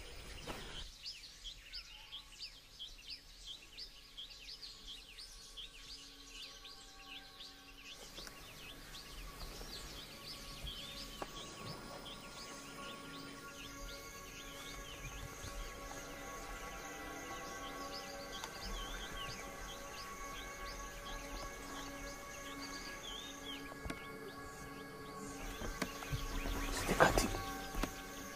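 Forest ambience with rapid, repeated high chirps from birds or insects, about three a second. About eight seconds in, a soft score of sustained music tones comes in under it, and a sudden loud hit sounds near the end.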